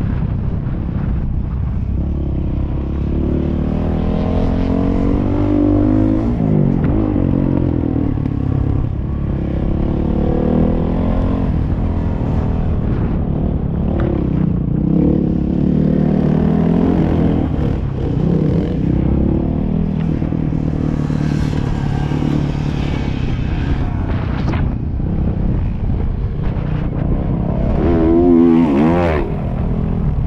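Motocross dirt bike engine being ridden hard around a dirt track, its revs climbing and dropping repeatedly through throttle and gear changes, with a quick rev up and down near the end. Wind noise rumbles on the helmet-mounted microphone throughout.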